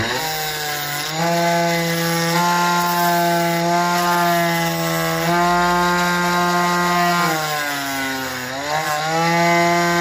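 Small electric motor spinning an abrasive disc with a steady whine, the PVC blades of a fan impeller held against the disc and ground with a rasping rub. The motor comes up to speed in the first second; near the end its pitch sags for over a second as the disc is loaded, then recovers.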